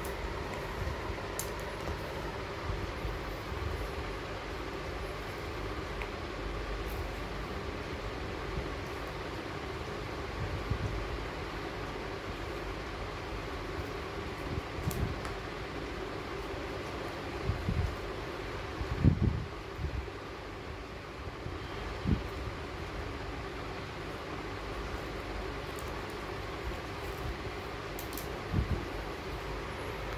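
A steady mechanical hum under a few soft knocks and rustles of paper food boxes and packets being handled. The loudest knock comes about two-thirds of the way in.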